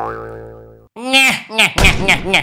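Cartoon sound effects: a sustained note that fades away over about a second, then a few quick springy boing glides, with upbeat dance music kicking in near the end.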